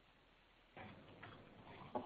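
Near silence on a conference-call phone line: faint line hiss comes in under a second in, with a few faint clicks.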